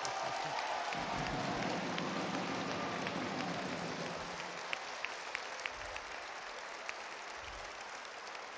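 Audience applauding, steady for about four seconds and then thinning out to scattered single claps.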